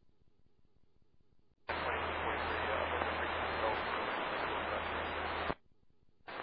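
Air traffic control radio channel opening with no words: steady static hiss with a low hum, starting sharply about two seconds in and cutting off sharply near the end, after near silence.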